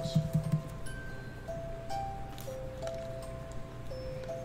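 Vintage turbo revolving color projector for aluminum Christmas trees playing its built-in tune: a slow, simple melody of single clear notes, one after another.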